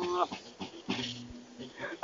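A voice holding one steady sung note in a Mande donso hunters' song, cutting off about a quarter second in. A quiet lull follows, with a faint low steady tone in the middle.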